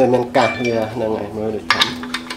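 Metal parts clinking as they are handled at the shaft and hub of a washing-machine direct-drive motor stator, with a sharp clink about half a second in and a quick cluster of clinks near the end. A voice talks over it.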